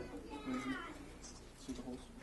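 Faint talking voices in a quiet room, with a brief high, gliding voice-like sound about half a second in.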